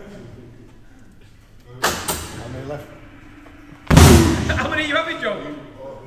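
A boxing-arcade punch-ball machine being struck: a thud about two seconds in, then a much harder, louder blow to the pad about four seconds in, with voices reacting right after.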